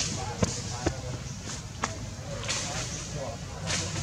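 Indistinct voices of people talking in the background, over a steady outdoor hiss, broken by several sharp clicks.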